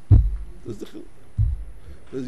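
Two dull, deep thumps on a close microphone, about a second and a half apart, with a brief faint snatch of a man's voice between them.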